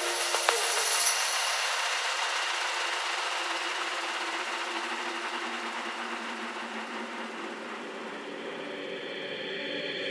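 Electronic hissing noise wash in a break of an ethnic deep house DJ mix, slowly fading. The last few percussion clicks end about half a second in, and the wash grows fuller in the low end toward the end.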